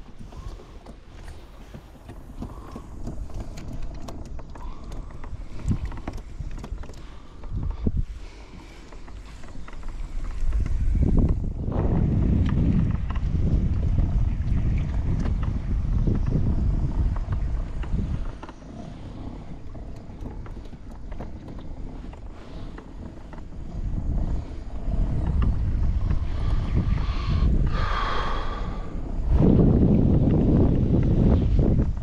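Wind buffeting the microphone in a kayak on open sea water: a low rumble that rises into strong gusts about a third of the way in and again near the end.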